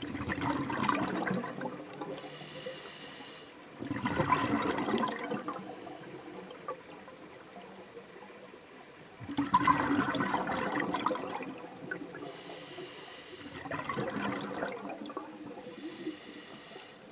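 A scuba diver breathing through a regulator underwater: four bubbling rushes of exhaled air, with a short, high hiss of inhalation through the regulator twice in between.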